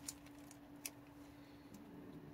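Raccoon crunching a cracker: a few faint, sharp crunches, the clearest right at the start and just under a second in, over a steady low hum.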